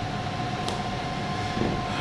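Steady indoor background hum and hiss with a faint constant tone, from a machine running steadily, such as room air conditioning.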